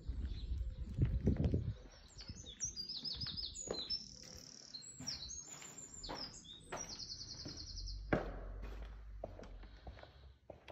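Small songbirds singing, with quick high trills and warbles through the middle of the clip. Low rumbling and a few knocks run beneath, loudest about a second in, with a sharp knock near the end.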